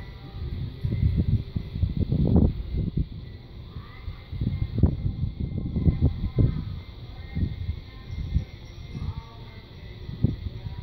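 Gusts of wind buffeting a phone microphone outdoors, heard as irregular low rumbles that swell twice, loudest about two seconds in and again around five to six seconds in.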